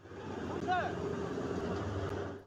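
Steady rushing noise of water churning around a sinking boat, with a brief high cry about two thirds of a second in.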